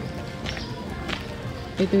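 Footsteps on a dirt street, a sharp step roughly every two thirds of a second, over steady background noise.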